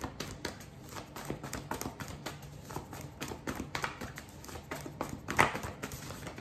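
A stack of handwritten card-stock cards leafed through by hand: irregular light clicks and flicks as the cards slip past each other, with a sharper snap about five and a half seconds in.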